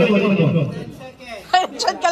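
People's voices: a drawn-out vocal sound falling in pitch in the first half, then a few short spoken sounds near the end.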